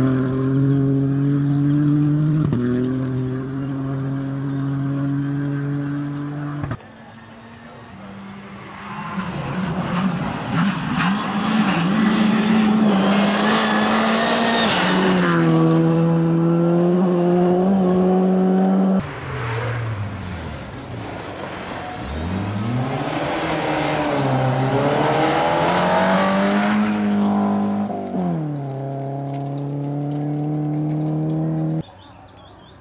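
Rally cars at high revs on a gravel stage, the engine note stepping down at gear changes and dipping then climbing again as a car lifts off and accelerates, with gravel spraying from the tyres.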